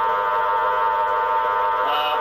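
Spiricom device producing a steady buzzing drone of many electronic tones held together. This is the tone bed through which its robotic voice is said to speak.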